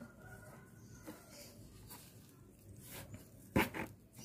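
A small scoop and hands working loose, dry planting medium into a plastic pot: faint rustling and scraping, with a few short, louder scraping knocks near the end.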